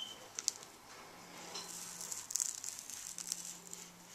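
A hot ceramic flat iron pressing hair, with a faint sizzling crackle that is strongest a little past halfway. A few sharp clicks come in the first second.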